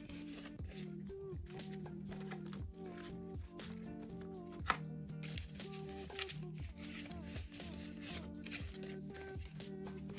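Soft, steady background music with a low bass line and a simple melody, under faint rustling of paper banknotes being handled and sorted.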